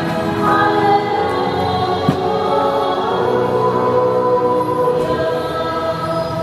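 A group of voices singing a hymn together at Catholic Mass, with long held notes at a steady level.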